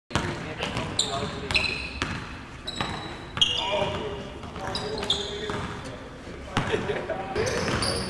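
Basketball practice on a hardwood gym floor: a ball bouncing again and again, sneakers squeaking in short high chirps, and players' voices calling out.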